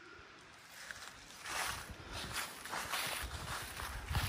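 Irregular rustling and scuffing of a person moving on a trail, faint at first and getting louder about a second and a half in.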